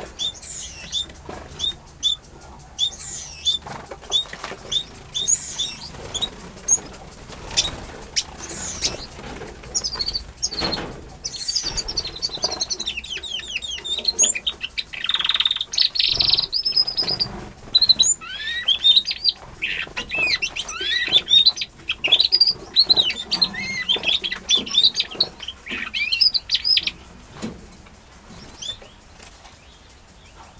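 Small aviary finches chirping and calling. A single short high chirp repeats about twice a second at first. From about eleven seconds several birds chirp and twitter at once, busily, then they thin out near the end.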